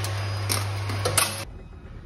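A coin fed into the slot of a pay-toilet entry machine: a few sharp mechanical clicks over a steady low hum. The hum cuts off about a second and a half in.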